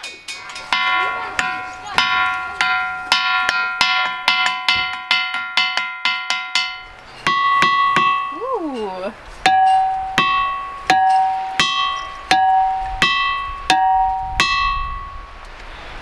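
Hammer striking a ringing rock, each blow giving a clear, bell-like ring that hangs on. Quick strikes come about three a second, then from about seven seconds in slower strikes alternate between a higher and a lower note.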